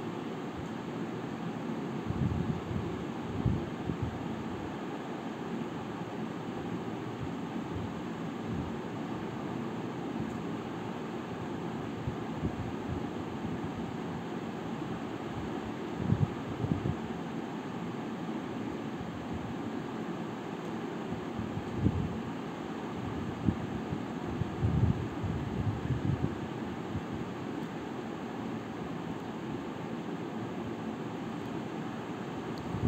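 Steady background hiss and hum, like a fan or air conditioner running, with a few soft low thumps a few seconds in, around the middle, and again later on.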